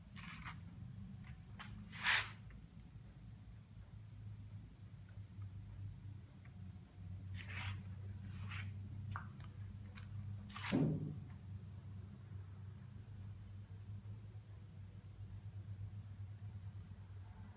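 Plywood kinetic sculpture swinging on its bearings: a few short, soft knocks and creaks from the wooden mechanism, the loudest about two seconds in, over a steady low hum.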